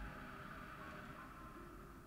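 Faint hiss of a hookah being purged: breath blown down the hose forces smoke out through the Honor Rise's blow-off valve just above the base, the hiss fading away.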